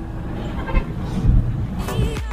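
Engine and road noise of a moving pickup truck heard from inside the cab: a steady low rumble with faint voices. Music comes in near the end.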